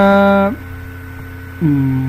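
Steady electrical mains hum under a man's voice. He holds a long, level hesitation sound ("uhh") that ends about half a second in, and starts another near the end.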